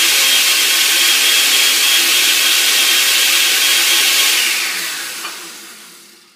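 Countertop blender with a glass jar running at full speed, blending hot coffee with butter and MCT oil, with a steady high whine over the churning. About four and a half seconds in, the motor is switched off and winds down, fading away over the last second and a half.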